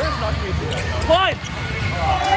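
Indoor volleyball rally: the ball being struck, with players' short shouts and calls over the rumble of the hall.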